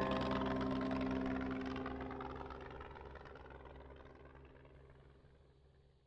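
Propeller aircraft engine drone mixed with a held musical chord, fading out steadily to silence.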